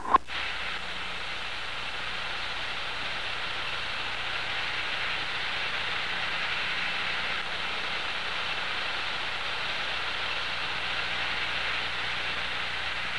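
A sharp click, then a steady hiss as an aerosol can of Gillette Foamy shaving cream sprays out a continuous stream of foam.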